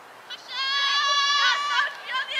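One high-pitched voice yelling, starting about half a second in and held for over a second on a nearly steady pitch.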